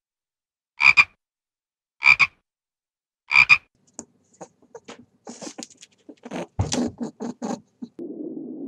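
A frog croaking four times, about 1.3 seconds apart. In the second half, a quick irregular series of short clicks and grunts follows.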